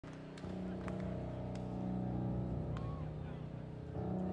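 A live band's low sustained chord droning through the stage sound system as the song's intro begins, with a few sharp clicks.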